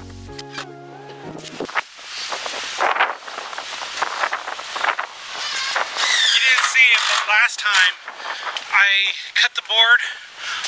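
Background music that stops about two seconds in, followed by outdoor noise and then a man talking from about six seconds on.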